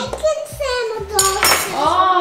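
A high voice holding long, gliding notes, with a brief clink of cutlery or dishes a little over a second in.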